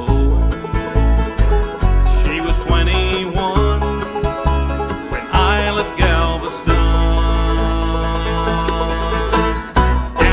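Live bluegrass band playing an instrumental passage on fiddle, acoustic guitar, mandolin, banjo and upright bass, ending on a long held chord in the last few seconds.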